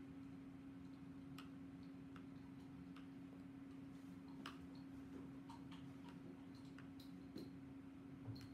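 Near silence: a steady low hum with faint, irregularly spaced small clicks.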